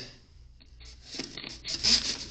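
A paper leaflet rustling and scraping against a metal mailbox slot as it is pushed in. It starts about a second in and grows louder toward the end.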